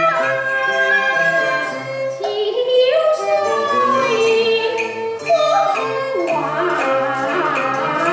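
Cantonese opera song sung at a microphone, the voice gliding and bending between long held notes over a traditional instrumental accompaniment.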